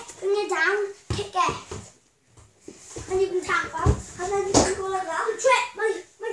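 Young children's voices calling out and exclaiming, with a couple of thumps, about a second in and near four seconds in.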